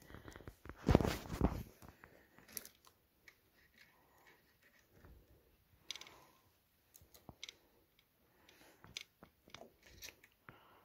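Cables and plastic connectors handled inside a PC case: a louder rustle about a second in, then scattered light clicks and rustles.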